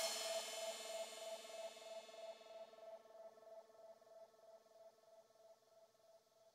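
The closing tail of a progressive psytrance track: once the kick drum stops, a cymbal wash and a pulsing synth tone echo and fade away over about two to three seconds, into near silence.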